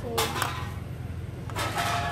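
A metal ladle clinks twice against an aluminium cooking pot just after the start, over a steady low mechanical hum. A voice is heard near the end.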